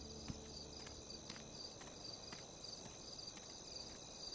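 Crickets chirping faintly in a steady repeating pulse, about three chirps a second, with a few faint taps.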